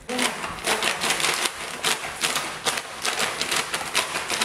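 Rapid, irregular clicking and tapping that starts suddenly, in quick clusters of sharp strokes.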